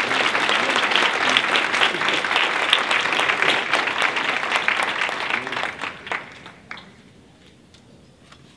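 Audience applauding, a dense run of clapping that dies away about six seconds in, leaving a few scattered claps.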